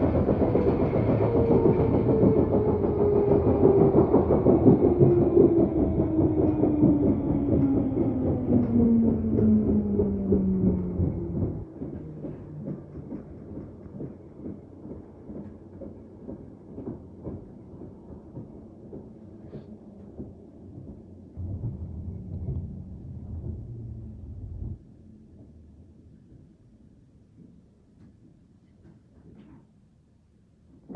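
London Underground 1972 stock tube train slowing into a station, heard from inside the carriage: a motor whine falls steadily in pitch for about the first eleven seconds over running rumble and wheel clicks on the rail joints. The noise then drops sharply, a low rumble returns for about three seconds, and the train settles quiet as it comes to a stop.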